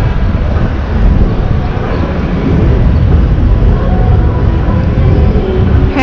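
Loud outdoor city noise: a steady, rumbling haze heaviest in the low end, with a few faint steady tones in it and no clear single source.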